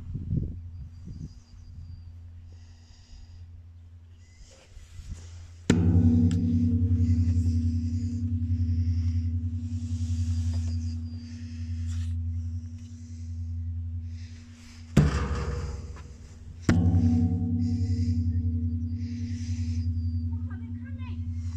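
Deep gong-like strikes over a low drone: two sudden hits about eleven seconds apart, each ringing on at a steady low pitch for several seconds.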